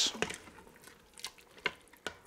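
A spoon stirring thick beef stew in a stainless steel Instant Pot inner pot: faint wet squishing with a few light clicks of the spoon against the pot.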